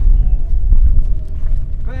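Wind buffeting the microphone outdoors, a loud, uneven low rumble, with a word of speech right at the end.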